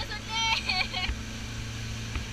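Motorboat's outboard engine running steadily at speed with a steady low hum and rushing noise of wind and water. About a third of a second in, a girl's short, high-pitched laughing voice sounds for under a second.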